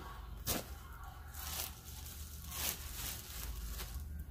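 Clothes being handled: a studded leather vest and a knit cardigan rustle and swish as they are moved, with a sharper brush about half a second in and a few softer swishes after.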